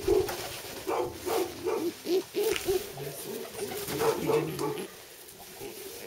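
Domestic pigeons cooing, a run of short, low notes repeated several times a second that fades out near the end.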